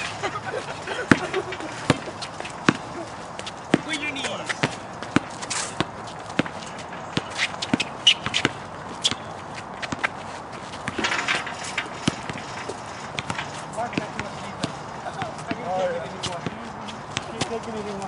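A basketball bouncing and being played on an outdoor concrete court: irregular sharp thuds and knocks, with players' voices calling out now and then.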